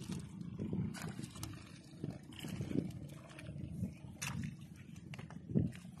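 Hands pulling through a heap of wet water weeds on a nylon net, with scattered rustles and soft clicks, over a steady low rumble.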